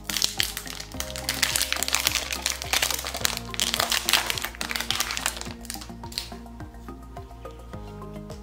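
Foil wrapper of a trading-card pack crinkling as it is torn open and pulled apart, over steady background music. The crinkling thins out about six seconds in.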